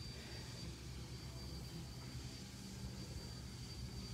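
Quiet room tone: a faint, steady low hum with a thin, constant high-pitched whine above it and no distinct events.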